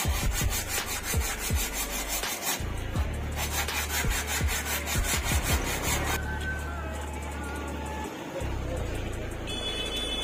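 Sandpaper rubbed by hand over the cut edge of a plywood ring in quick, repeated strokes, over background music with a deep bass beat; the sanding stops about six seconds in.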